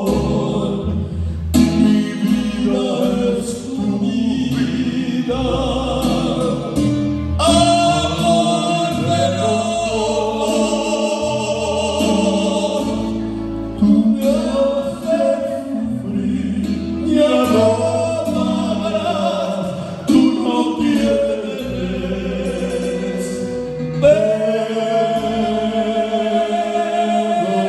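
Two men singing a song together into handheld microphones over musical accompaniment with a low bass line, the sung phrases starting afresh every few seconds.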